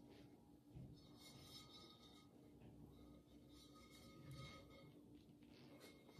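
Near silence: faint room tone, with perhaps faint handling of the glazed ceramic sink.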